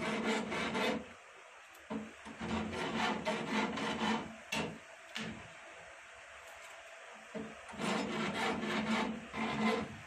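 Flat steel file rasping across the lugs of lead tubular-battery plates clamped in a comb jig, in runs of quick back-and-forth strokes with a short break about a second in and a pause of about two seconds past the middle. The lugs are being roughened so they sit easily in the comb and the solder grips them firmly.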